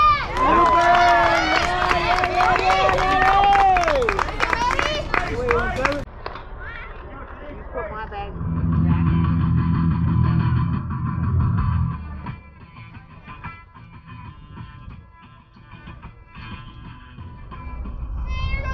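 Voices singing or chanting a cheer, with one long note held for a few seconds, then music with guitar after about six seconds.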